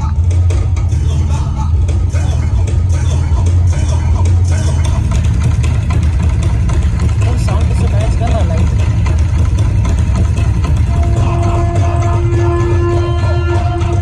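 Loud music with a heavy, steady bass and voices over it; a long held note comes in near the end.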